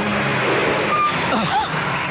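Bus engine and road noise as the driver presses the accelerator: a steady noisy rush.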